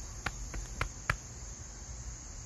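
Steady high-pitched chirring of insects, with a few light clicks in the first second or so.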